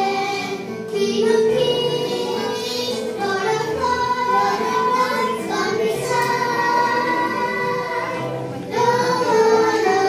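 A small group of young girls singing a gospel song together into microphones, with musical accompaniment underneath, in long held notes.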